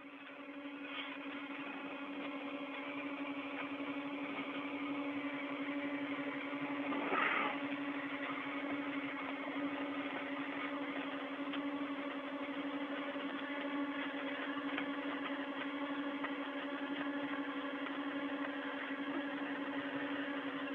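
Steady hum with a constant low tone over hiss on the open spacewalk communications audio, fading in over the first couple of seconds and then holding level, with one brief louder rush about seven seconds in.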